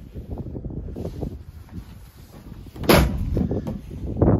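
A pickup's rear tailgate is shut with a single loud slam about three seconds in, after a few light knocks of handling.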